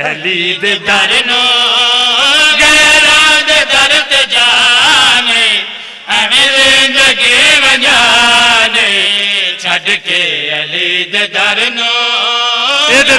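A man's voice chanting a sung recitation into a microphone, with long held notes that waver in pitch. There is a short break about six seconds in.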